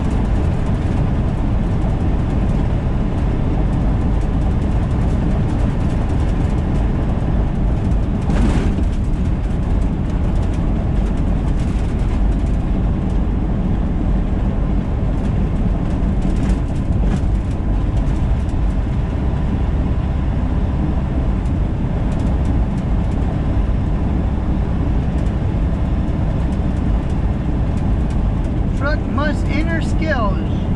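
Steady drone of a semi truck's engine and road noise heard inside the cab while cruising on the highway. Near the end comes a brief gliding, voice-like sound.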